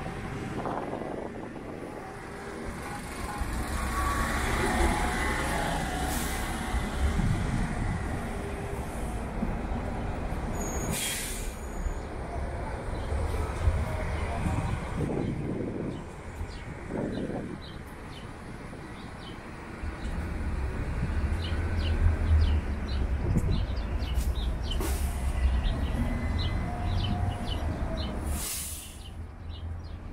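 City buses running at a bus station: a low engine rumble that swells twice, with a short sharp hiss about eleven seconds in.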